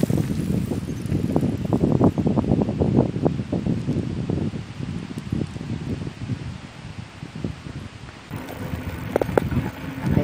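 Wind buffeting the camera microphone in irregular low gusts, strongest in the first few seconds and easing off after that.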